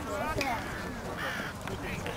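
Distant shouting from players and spectators at a youth lacrosse game: short, strained yells with no clear words, twice in quick succession.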